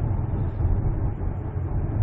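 Steady low rumble of engine and road noise inside the cabin of a 2017 Ford Explorer 2.3-litre turbo petrol SUV, coasting with the accelerator released.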